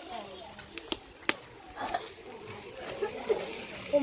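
Three sharp metal clicks within the first second and a half, from barbecue tongs and a spatula knocking on a charcoal grill's wire grate as food is turned, followed by faint voices.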